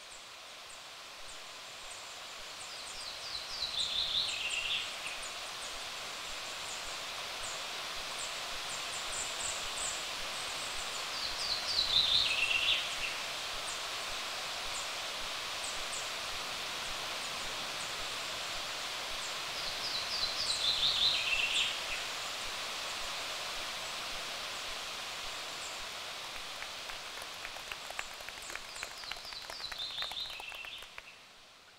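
Outdoor natural ambience: a steady hiss with a songbird singing a short descending trill four times, about every eight seconds, over faint high chirping. Scattered hand claps near the end.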